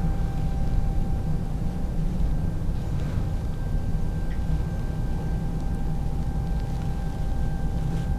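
Electric lift chair's lift motor running at a slow, steady pace as the chair lowers from its raised standing position: an even low hum with a faint steady whine.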